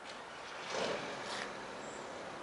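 Steady outdoor hush of distant city traffic, with a soft swell of rushing noise just under a second in.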